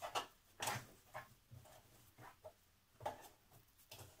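Fabric rustling in short, irregular bursts as layers of apron fabric are handled and turned at the sewing machine.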